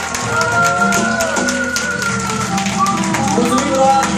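Live acoustic band music: a harmonica plays held, bending notes over strummed acoustic guitars, electric bass and a steady tapped cajon beat.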